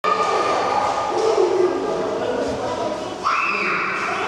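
Indistinct voices of people talking, echoing in a large indoor hall. A short, steady high-pitched tone cuts in a little after three seconds and holds for about half a second.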